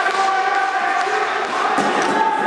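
Ball hockey play on a wooden gym floor: knocks of the ball and sticks on the floor, with voices echoing in the hall.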